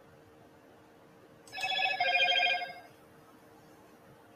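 A short electronic ringing tone, a little over a second long, starts about a second and a half in and warbles in two parts, the second slightly different in pitch. A faint steady hum lies under it.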